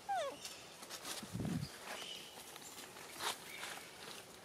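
A young macaque moving through leaf litter: a short high squeak falling steeply in pitch right at the start, then scattered rustling and light footfalls in dry leaves, with one low thump about a second and a half in.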